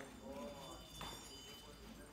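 Faint, indistinct voices of people talking, with footsteps on stone paving and one sharp click about a second in.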